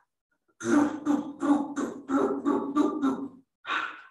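A woman making a rhythmic vocal sound effect: about ten short, evenly spaced voiced pulses, roughly four a second, then one more short pulse near the end.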